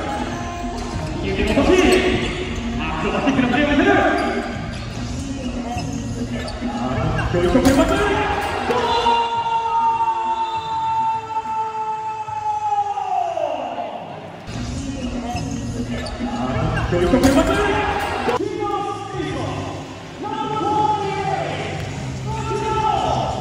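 Futsal ball being kicked and bouncing on a hardwood court in an echoing sports hall, with players' voices. About halfway through, a long tone slides steeply down in pitch and then cuts off.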